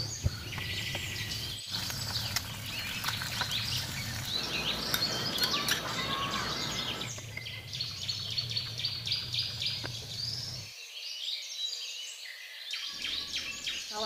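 Many small birds chirping, with short rapid calls overlapping throughout, over a low background hum that changes abruptly several times.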